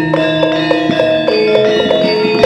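Javanese gamelan music: metallophones ringing a run of sustained, overlapping notes.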